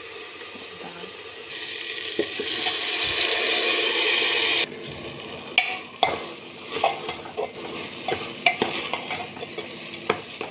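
Chana dal and basmati rice sizzling in hot oil in a metal pot. The hiss grows louder and cuts off abruptly a little before halfway. Then a metal ladle scrapes and knocks against the pot at irregular intervals as the mixture is stirred, over a fainter sizzle.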